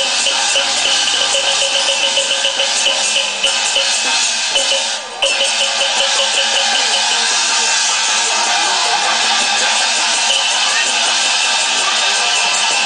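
Taiwanese opera (gezaixi) accompaniment music for a stage fight: loud, dense and steady, with busy percussion throughout and a brief dip about five seconds in.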